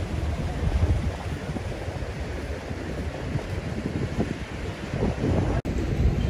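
Wind buffeting the camera microphone outdoors, a low, uneven rush of noise with no voices. The sound drops out abruptly for an instant near the end.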